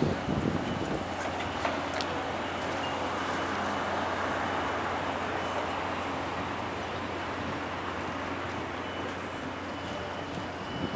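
Outdoor street traffic noise: a steady wash of road sound that swells and fades once around the middle, as of a vehicle going by, with a few faint clicks in the first two seconds.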